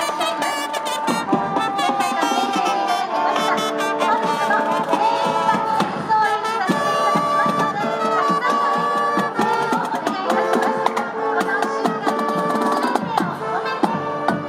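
Marching band playing: trumpets and other brass holding melody notes over the steady beat of marching bass drums and snare drums.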